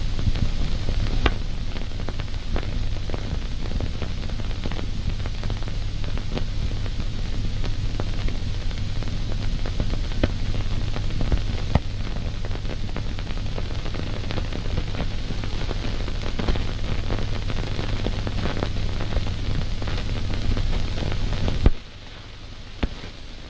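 Steady hiss and low hum of an old 1940 film soundtrack, with scattered crackles and pops; it drops away suddenly near the end.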